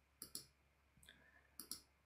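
Computer mouse clicking faintly: two quick pairs of clicks, one just after the start and one near the end.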